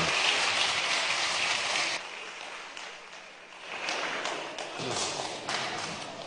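A group of people applauding, which cuts off abruptly about two seconds in. After that there is a quieter hall murmur with faint voices and a few clicks.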